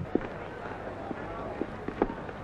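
Outdoor street ambience: a steady low background of town noise with a few faint scattered taps.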